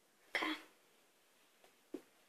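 A girl gives a single short cough about a third of a second in, followed near the end by two faint clicks.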